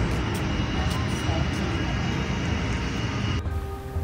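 Steady outdoor background noise, a broad rumbling hiss with faint distant voices. It cuts off sharply about three and a half seconds in, leaving a quieter steady hum.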